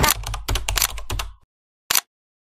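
Handling noise on a phone's microphone: a quick run of clicks and rubbing over a low rumble as the phone is gripped and covered, cutting off abruptly after about a second and a half. One short click follows near the end.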